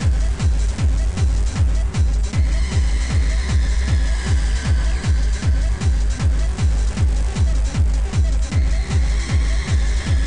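Fast hard techno in the free-party tekno style: a heavy kick drum pounding about three times a second, each kick dropping in pitch, under a held high synth line and dense percussion.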